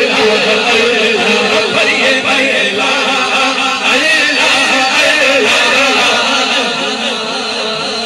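A man singing a naat, an Urdu/Punjabi devotional song, into a microphone in long, ornamented, sliding phrases over a steady low drone.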